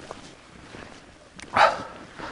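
A dog barks once, short and loud, about one and a half seconds in.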